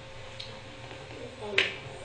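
A steady low hum, then a single sharp click about one and a half seconds in, with a man's "um" around it.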